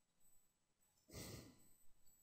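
A person's short exhale into the microphone about a second in, lasting about half a second.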